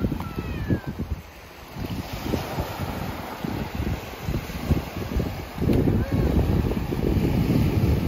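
Wind buffeting the microphone over small waves washing onto a sandy shore, a low gusty rumble that gets louder and steadier about six seconds in.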